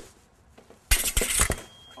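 Saber blades clashing: a quick flurry of sharp metallic clinks about a second in, lasting about half a second, as one fencer attacks through the other's blade held in line.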